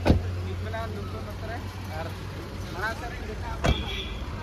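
A car door shutting with a thump, then a car's engine idling with a steady low hum under faint voices; another thump comes near the end.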